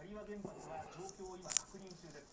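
Speech from a television news broadcast playing in a small room, with one sharp click about one and a half seconds in.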